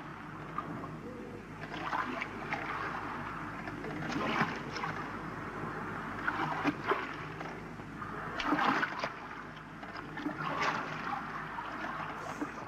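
Sea water splashing and lapping around a wooden boat, with scattered knocks every second or two.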